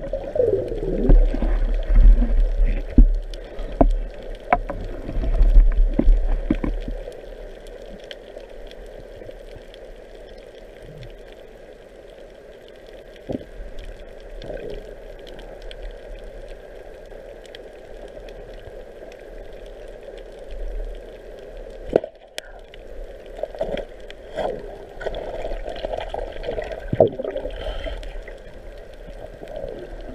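Underwater water noise heard through a camera housing as a diver swims: rushing and gurgling water, heaviest in the first seven seconds, with scattered clicks and knocks.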